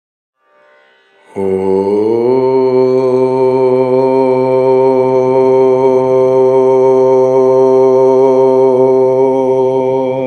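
A man's voice chanting one long 'Om', beginning about a second in, sliding up in pitch briefly and then held steady on one note for about eight seconds.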